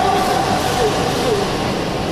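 Steady indoor sports-hall noise with background voices during a badminton rally, and a couple of short squeaks about a second in, typical of shoes on the court mat.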